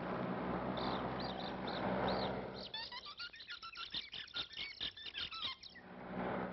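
Cartoon sound effects. A steady rushing drone with a few short high squeaks comes first. From a little under three seconds in, a rapid flurry of chirps, rising whistles and clicks follows and stops just before the end.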